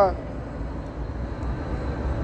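Steady low rumble of city street traffic, with no distinct event standing out.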